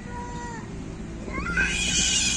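Two animal calls: a short pitched call falling slightly in pitch at the start, then a louder, harsher cry from about one and a half seconds in, the loudest thing heard.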